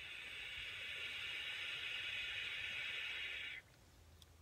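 Long drag on a handheld vape: a steady hiss of air drawn through the device, cutting off suddenly near the end.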